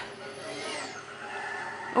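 A television playing faintly in a quiet room, with a Mickey Mouse programme on.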